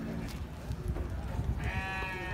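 A sheep bleats once, a single wavering call starting near the end, over a low rumble.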